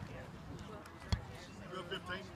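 A single sharp smack of a baseball impact about halfway through, over faint background voices.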